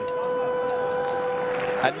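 Electronic end-of-time buzzer at a karate match: one steady pitched tone that cuts off just before two seconds in, signalling that the bout's clock has run out.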